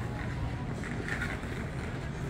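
A steady low rumble of wind on the microphone, with soft footsteps on pavement about every half second as the recordist walks.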